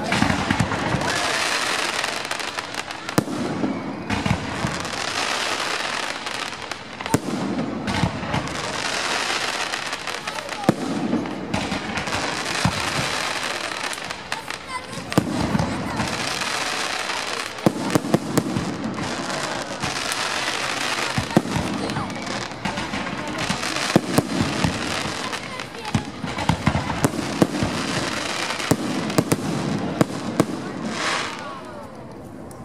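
Fireworks display: a rapid, unbroken run of aerial shells and rockets, with many sharp bangs over a dense, continuous rushing and crackling noise.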